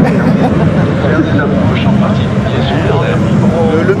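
Steady low jet engine rumble from a pair of Su-22 fighter-bombers flying overhead, with bystanders' voices over it.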